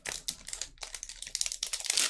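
Foil wrapper of a Magic: The Gathering collector booster pack crinkling and tearing as it is opened by hand, a rapid run of short crackles.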